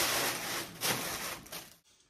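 Brown packing paper rustling and a cardboard delivery box being handled, a continuous papery scraping that stops abruptly near the end.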